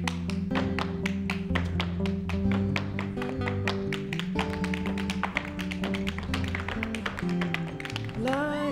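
Two dancers' tap shoes striking the stage floor in quick, dense rhythms of sharp clicks, over an instrumental backing track with sustained bass notes.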